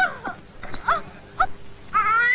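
A few short, high-pitched whimpering cries, each a quick sweep in pitch, over a faint steady hum.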